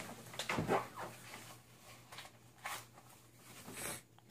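Soft clothing rustle and a few light scrapes as a Kydex appendix inside-the-waistband holster is slid into the front of a pair of jeans and its heavy-duty plastic clip is pushed over the waistband.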